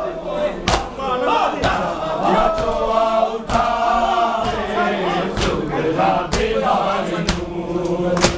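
A crowd of men chanting a noha lament in unison, with rhythmic matam chest-beating: a sharp slap of hands on bare chests about once a second under the massed voices.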